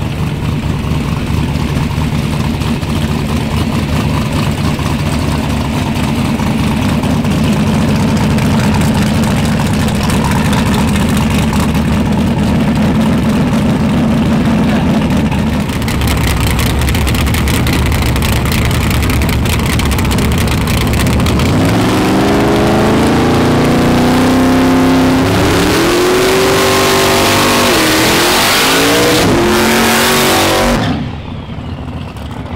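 Street-race car engines idling with a steady rumble, then from about twenty seconds in revved hard in repeated rising and falling sweeps. A loud hiss of spinning tyres joins the revving near the end as a car does a burnout.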